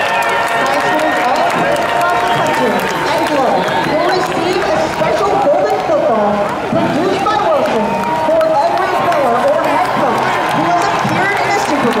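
A large stadium crowd: many voices talking and calling out at once, loud and continuous, with no single voice standing out.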